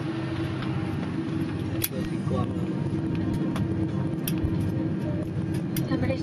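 Airliner cabin noise during the landing rollout: a loud, steady rush of engines and airflow with a constant low hum, broken by a few sharp clicks, with passenger voices faintly underneath.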